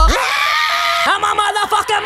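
A person's voice yelling, one long held shout and then a few short ones, with the beat cut out underneath.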